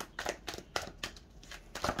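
A tarot deck being shuffled and handled by hand: a run of short, irregular card clicks and snaps.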